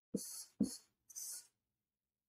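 Marker strokes on a whiteboard: three faint short scratches in the first second and a half as a word is written.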